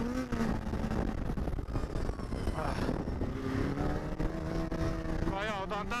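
Polaris SKS 700 snowmobile's two-stroke twin engine running under way on the trail, its pitch sagging and then climbing slowly as the throttle changes, over a rough running noise from the track.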